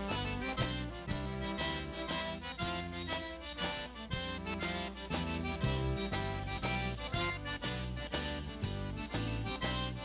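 Cajun band playing an instrumental passage of a waltz, with a Cajun button accordion carrying the melody over a steady, regular bass pattern.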